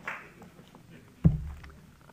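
A single sharp, heavy thump picked up by the microphone about a second in, with a deep boom that dies away quickly.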